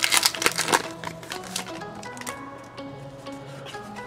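Foil Pokémon booster pack wrapper crinkling and tearing open in a flurry of sharp crackles during the first second and a half, over steady background music that carries on alone afterwards.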